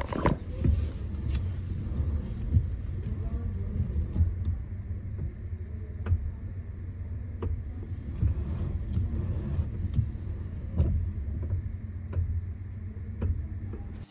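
Steering assembly of a 2017 Honda Civic RS Turbo worked from full left to full right lock, giving scattered knocks over the engine's steady low idle. The noise from the steering assembly is the fault being shown.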